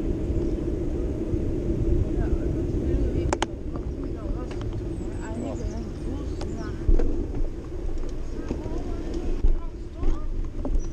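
Steady rumble of wind and rolling on a moving action camera, with a few sharp knocks as it jolts over the paving. Faint voices of passers-by come and go in the background.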